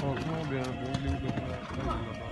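Hoofbeats of a horse cantering on a sand arena, a dull rhythmic thudding under a person's voice.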